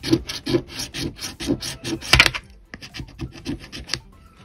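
A coin scraping the latex coating off a scratch-off lottery ticket in quick back-and-forth strokes, about five a second, with one louder scrape about two seconds in, a short pause, then a few more strokes.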